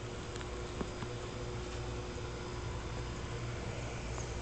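Steady low hum and hiss of room tone, with a few faint small clicks about half a second to a second in.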